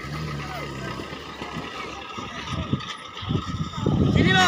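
Offroad 4x4's engine running at low revs as the vehicle creeps down a steep dirt slope, with several knocks from the tyres and chassis over the ruts in the second half. Voices of onlookers come and go over it.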